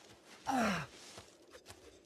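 A man's short groan, falling in pitch, about half a second in, followed by a few faint clicks.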